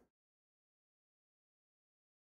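Near silence: the sound track is effectively mute.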